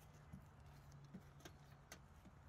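Faint footsteps on a forest floor of pine needles and dry litter: about four soft, uneven crunches and clicks as two people walk past.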